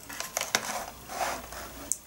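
A few faint, light clicks and soft rustling from handling a newly plugged-in USB computer mouse at a laptop.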